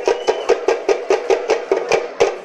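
Festival drums beaten in a fast, even rhythm, about six strokes a second.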